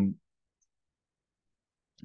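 A man's drawn-out 'um' trailing off in the first moment, then dead silence: the recording is gated, with no room tone, until speech resumes.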